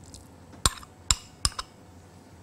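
A metal spoon clinking against glass bowls three times, sharp and short, as mashed baked pumpkin is scraped from a small glass bowl into a glass mixing bowl.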